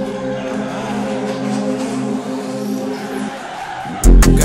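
Race-car engine and tyre-squeal sound effect laid over a sparse music bed with no drums, in the breakdown of a hip-hop track.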